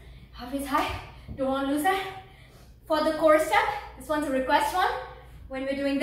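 A woman's voice alone, in about five short phrases with brief pauses between; no music under it.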